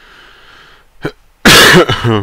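One loud, harsh cough from a man close to a headset microphone, about one and a half seconds in, ending in a brief voiced tail.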